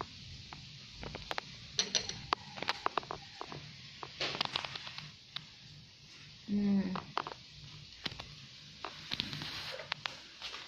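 Metal chopsticks clicking and scraping against a ceramic bowl as instant noodles are stirred and lifted, in many short irregular clicks. A short hummed "mm" a little past halfway.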